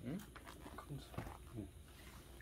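Quiet, brief voice sounds: a questioning "hm?" followed by low, short murmurs.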